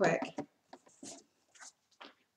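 Poster board being taken off and set on a wooden easel: a few faint, brief handling sounds about a second in and again near the end.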